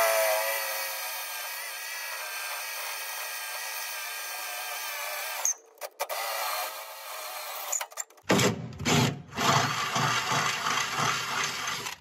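Cordless drill running, its bit boring up through an aluminum Z-bar and tower brace with a steady whine. It stops briefly about halfway, restarts, and the last few seconds turn rougher and louder as the bit cuts.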